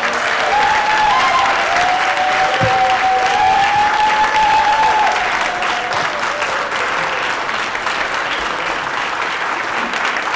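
A roomful of people applauding steadily, loudest in the first half. A drawn-out wavering tone rides over the clapping for the first five seconds or so.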